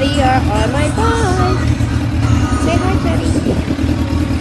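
Motorcycle engine running with a steady low rumble, heard from the rider's seat.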